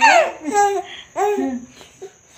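Baby laughing in a few short, high-pitched bursts.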